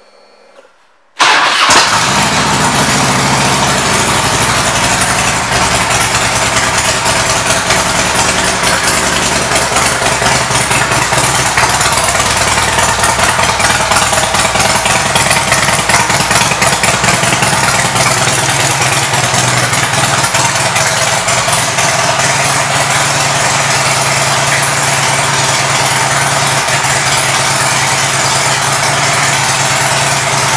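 2006 Harley-Davidson Electra Glide Standard's air-cooled Twin Cam 88 V-twin started about a second in, then idling steadily and loud through aftermarket Rinehart exhaust.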